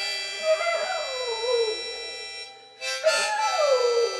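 A harmonica plays held chords while a small terrier howls along with it twice. Each howl slides down in pitch, and the harmonica breaks off briefly between them.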